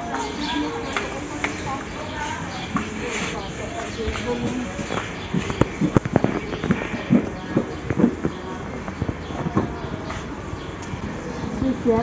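Busy wholesale-supermarket ambience: background voices of other shoppers and music, with a run of short knocks and clatter from about five to eight seconds in.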